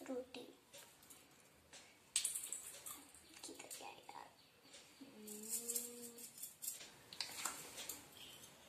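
Miniature steel kitchen utensils clinking and scraping faintly as small vessels and a tiny spoon are handled, with a few sharp metal clicks. A short hummed note from a voice sounds about five seconds in.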